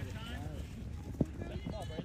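Indistinct voices of spectators and players calling out across a soccer field, with one short thump a little over a second in.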